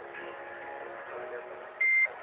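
A high school choir singing sustained notes in several voices. Near the end, a short, loud, high-pitched beep cuts in.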